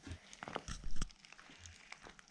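Slime being stirred with a wooden stick in a plastic tub of foam-bead slime: a few short sharp clicks and knocks of the stick against the tub in the first second, then faint stirring.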